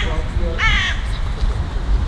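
A crow cawing once, a short harsh call a little over half a second in.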